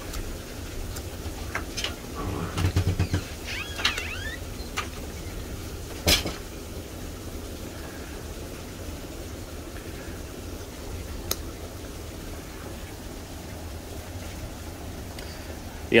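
Carving knife paring small cuts in a basswood block: scattered short slicing and scraping clicks, with one sharp click about six seconds in, over a steady low hum.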